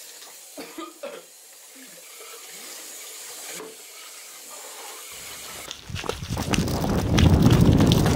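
Faint hiss with a few short, pitch-bending voice-like sounds. About six seconds in, a sudden loud, rough rumbling noise with crackles takes over.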